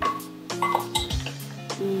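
Ice cubes clinking against a stainless steel measuring cup a few times as ice is scooped, over background music with held notes.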